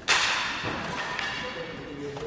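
A sudden loud crack that dies away over about a second and a half.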